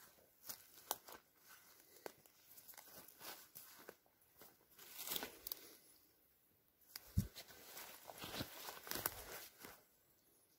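Footsteps through forest undergrowth: irregular crunching of twigs and swishing of ferns and brush underfoot, with a dull thump about seven seconds in.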